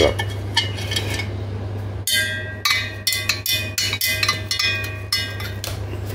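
Wash water being stirred: from about two seconds in, the stirrer knocks and clinks against the sides of the container several times a second, irregularly, each knock ringing briefly. A steady low hum runs underneath.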